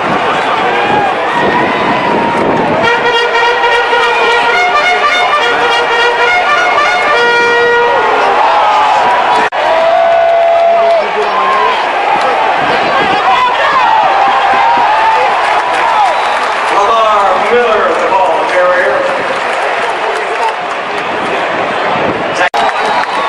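Stadium crowd noise with nearby fans talking. About three seconds in, brass music plays for around four seconds over the crowd.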